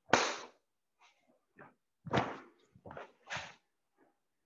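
Karate gi snapping and bare feet moving on the mat as kata techniques are performed: a sharp whip-like snap right at the start, the loudest, then further snaps about two and about three and a half seconds in, with softer rustles between.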